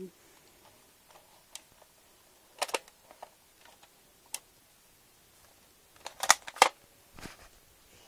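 Handling noise: scattered sharp clicks and knocks, with the loudest pair of clicks about six seconds in.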